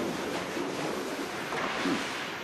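Hurricane storm-surge floodwater rushing through a house, with wind: a steady noisy rush.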